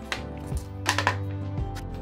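A handful of short knocks and taps from a desktop RAM module being handled on a table, over background music.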